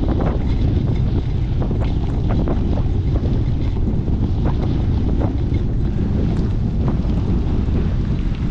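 Wind buffeting the microphone of a camera on a mountain bike rolling down a wet dirt road: a loud, steady low rumble. Scattered short ticks come from the tyres on the muddy, gritty surface.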